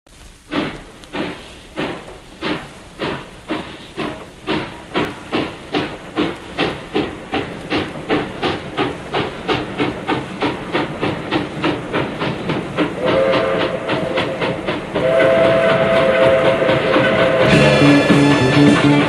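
Steam locomotive pulling away: the exhaust chuffs start slow and quicken steadily, then a chime whistle blows two blasts two thirds of the way through, the second longer and louder.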